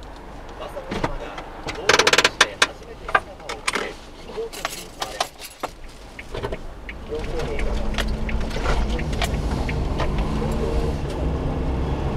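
Clicks and rustling of handling inside a kei van's cab, loudest about two seconds in. From about seven and a half seconds in, the Suzuki Every Join Turbo's small turbocharged three-cylinder engine runs steadily as the van drives off.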